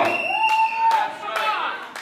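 Congregation members calling out in response to the sermon: one voice holds a high cry for under a second, followed by shorter calls and a few knocks, fading out near the end.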